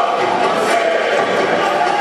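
Crowd of football supporters cheering and chanting, a steady mass of many voices with no single voice standing out.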